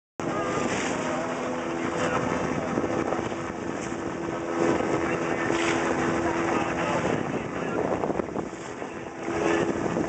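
Motorboat engine droning steadily, with a continuous wash of wind and water noise on the microphone. The engine's drone fades out about seven seconds in and returns near the end.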